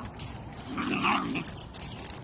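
Young dachshunds play-fighting, one of them giving a single short vocal sound about a second in, lasting about half a second.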